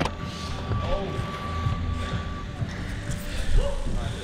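Bicycle rolling across a concrete floor, a steady low rumble with irregular knocks and rattles, and a thin steady high tone through the first two and a half seconds.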